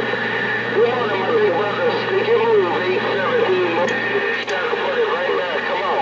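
Another station's voice received over a CB radio on channel 6: thin, band-limited speech with a steady hum under it, unintelligible, heard once the operator stops transmitting. The signal cuts in just before and drops out right at the end.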